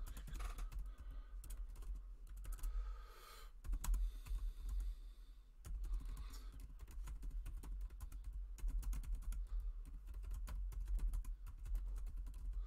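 Typing on a computer keyboard: a rapid run of key clicks as a sentence is typed, with brief pauses.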